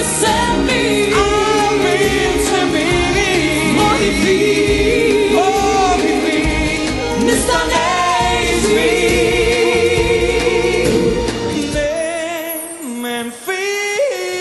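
A song with sung vocals over full band backing. About two seconds before the end the bass and drums drop away, leaving the voices over light accompaniment.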